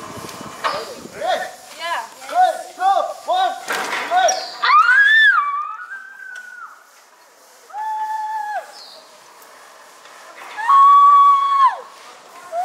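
Women screaming and laughing as they ride a giant swing. A run of quick laughs comes first, then a rising shriek, then two long, high held screams; the second, near the end, is the loudest.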